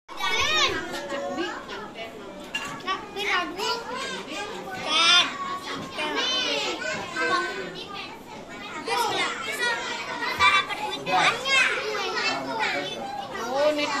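Young children chattering and calling out in high voices, several talking over one another.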